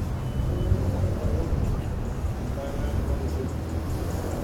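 Busy city street ambience: a steady low rumble of traffic under the voices of people passing.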